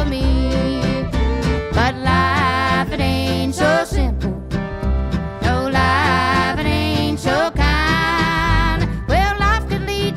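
Acoustic country band playing live: acoustic guitar, upright bass and fiddle, with a woman singing a wavering melody over them.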